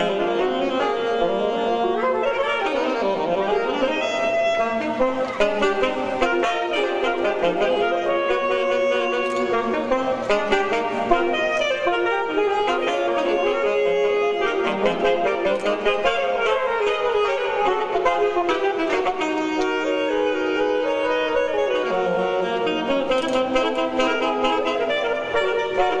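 Trio of alto saxophones playing together in close harmony, several lines moving note to note in a busy, continuous passage.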